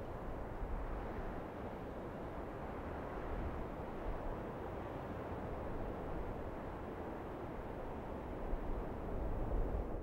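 Steady hiss and low rumble of an open spacecraft voice loop between crew callouts, with no words.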